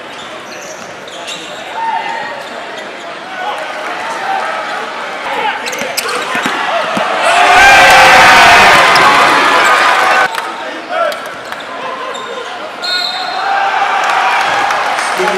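Live basketball game sound in an indoor arena: the ball bounces on the hardwood under steady crowd chatter. About seven and a half seconds in, the crowd breaks into a loud cheer at a dunk, which lasts about two and a half seconds.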